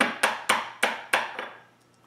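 Duck egg being knocked against a glass bowl to crack it: five sharp taps in quick succession, each with a short glassy ring. The shell and membrane are tougher than a chicken egg's, so it takes repeated taps to break.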